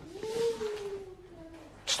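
One long, soft, voice-like call held near one note and slowly falling in pitch, lasting about a second and a half.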